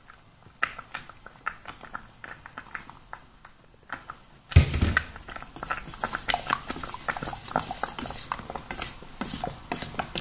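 Irregular clicks and light knocks of steel utensils against a steel double-boiler bowl, with a louder knock about four and a half seconds in as green sponge gourd juice is poured from a steel bowl into the melted soap base and worked in by hand. A faint steady high whine runs underneath.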